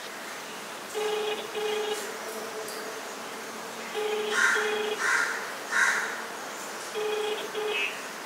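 Phone ringback tone over a smartphone's speakerphone: a double ring heard three times, two short low tones then a pause, while an outgoing call waits to be answered. Crows caw three times in the background about halfway through.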